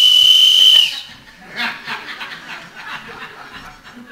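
A whistle held on one steady high note, cutting off about a second in, blown early as a signal. Soft chuckling from the audience follows.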